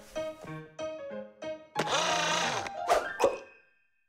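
Bouncy cartoon background music of short plucked notes, then about two seconds in a loud swelling cartoon sound effect with a bending pitch as a tool is conjured out of the pack-o-mat. Two thunks follow near the end before it fades out.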